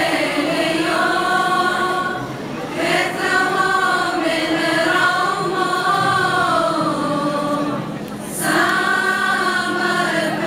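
A female choir singing in unison, holding long sustained notes, with short breaks between phrases about two seconds in and again about eight seconds in.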